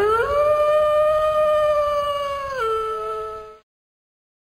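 A single long canine howl that glides up at the start, holds one steady pitch, steps down lower about two and a half seconds in, and stops about half a second before the end.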